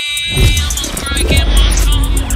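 A deep bass rumble swells in with sweeping, falling whooshes about half a second in and again just after a second, over music: a logo-intro sound effect.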